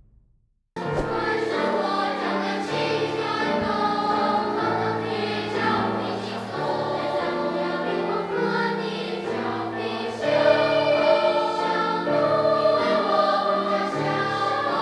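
A school children's choir singing, starting suddenly just under a second in after a brief silence, with several notes held at once; it gets louder about ten seconds in.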